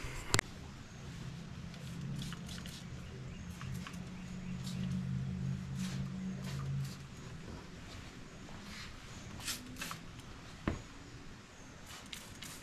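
Jug sprayer with a coiled-hose wand spraying rodent repellent into a car's engine bay. Its pump gives a low steady hum for about the first seven seconds, then stops, with scattered light clicks and rustles.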